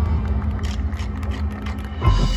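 Marching band field-show music in a soft passage: a low held tone and a steady higher note sustain, with a scatter of light taps or clicks from about half a second in.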